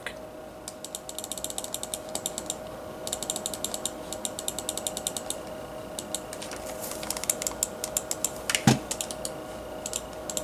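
Rapid, repeated clicking at a computer in three long runs, the Start button being pressed over and over while the Windows 10 Start menu fails to open. A faint steady hum runs underneath.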